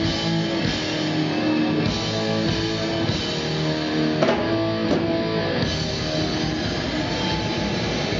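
Thrash metal band playing live: distorted electric guitars hold long chords over drums, with a few sharp drum hits in the second half.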